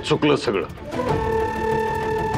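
A brief spoken word at the start, then a long held drone note of dramatic background music.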